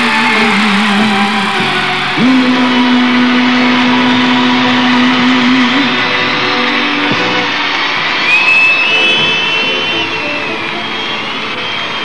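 Live Greek laïko band playing an instrumental passage between sung lines: plucked strings with long held notes, and a high line that slides up and down about two-thirds of the way through.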